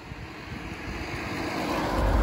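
Noise of a passing vehicle, growing steadily louder as it approaches.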